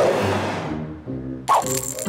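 Cartoon swoosh sound effect: a sudden rush that falls away over about a second, over background music. Another short burst comes near the end.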